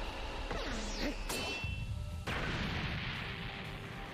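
Anime soundtrack of a fight scene: dramatic background music under battle sound effects, with a sharp hit a little over a second in and an abrupt change in the sound a little past halfway.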